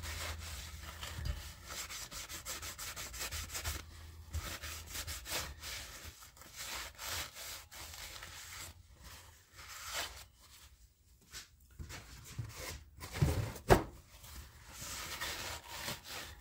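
A cloth rag rubbing on a crankshaft journal, wiping off leftover polishing compound, in quick dry strokes. The rubbing fades almost away for a few seconds past the middle, then picks up again.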